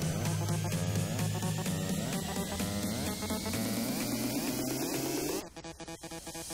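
Background electronic music with a steady beat and a slowly rising synth sweep, cutting out suddenly about five and a half seconds in.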